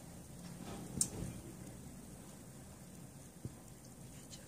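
Quiet room tone with a low hum, broken by one sharp click about a second in and a fainter tick later.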